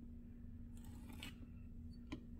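Needle tool drawn through a soft clay slab on a wooden board: a faint scrape lasting about half a second around the middle, with a small click near the end, over a steady low hum.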